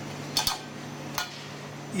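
Metal kitchen tongs clinking against a stainless steel jug and a glass plate while dipping dates in melted chocolate: two quick clinks about half a second in, and another just after one second.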